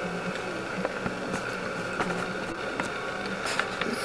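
Steady room tone of an electronics bench: a low hum and hiss with a few faint steady tones, broken by several faint, brief clicks.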